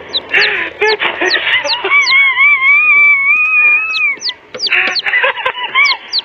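Comic, cartoon-like sound effects: a string of short falling chirps and, in the middle, a long wavering honk-like tone, close to goose or duck honking.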